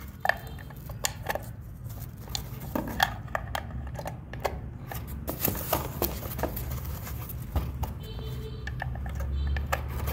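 Irregular small clicks, taps and scrapes as two glass vacuum tubes are handled and pushed into the sockets of a metal-cased tube preamp.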